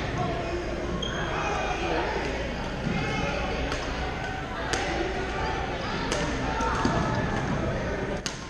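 Badminton rackets striking a shuttlecock, a string of sharp hits about once a second from about halfway through, over the chatter of players in a gym hall.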